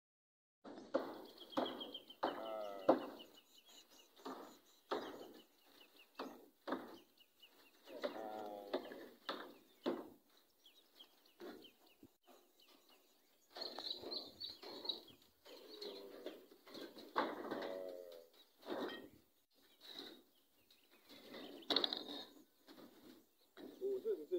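Farm animals calling on and off, several wavering calls of about a second each.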